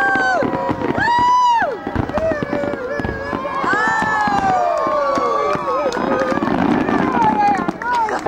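Fireworks display: several overlapping whistles that rise, hold and slide down in pitch, mixed with crackles and pops from the bursting shells.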